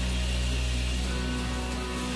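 Live worship band holding a steady sustained chord over a deep bass note, the soft lead-in to a song.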